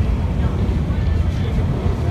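Inside a moving city bus: a steady low rumble of the engine and road.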